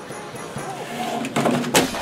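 A few knocks and then a louder clunk in the second half as a toy Santa figurine on a tabletop is pushed and knocked over, with faint voices before it.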